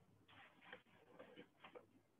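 Near silence with faint, irregular clicking.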